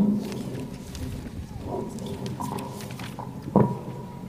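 Open public-address microphones on an outdoor stage picking up a low hum and rumble, with two loud low thumps, one at the start and one about three and a half seconds in, and a faint steady ringing tone in the second half.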